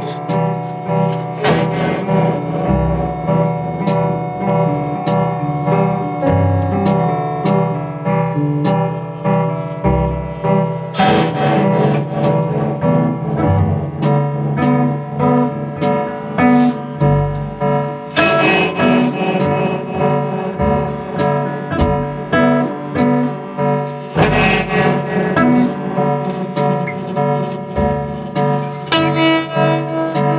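A band playing live in a rehearsal room: electric guitars played through amplifiers, over a steady beat of sharp hits about two a second.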